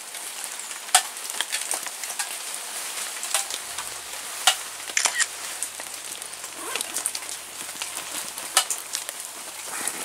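Rain pattering steadily on leaves, a fine hiss with scattered sharp drops landing, the loudest about a second in, twice around the middle and once late on.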